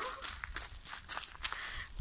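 Footsteps on a gravel path, a scatter of irregular light steps, over a low wind rumble on the microphone.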